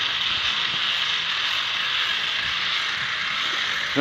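Steady, even high-pitched hiss of background noise, with faint irregular low knocks underneath.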